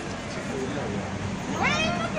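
Street noise with faint voices, and about one and a half seconds in a short high-pitched cry that rises and then falls in pitch.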